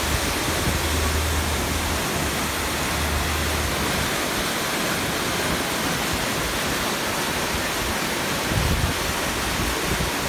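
Heavy rain falling and floodwater rushing along a flooded street: a steady, even hiss. A low engine hum sits under it for the first four seconds as a scooter rides through the water.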